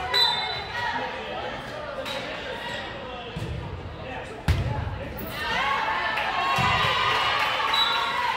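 A volleyball being struck during a rally, sharp hits echoing in a gym, the loudest about four and a half seconds in. Crowd voices swell after it.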